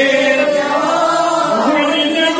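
A man's voice chanting melodically into microphones, drawing out long held notes that rise and fall slowly in pitch.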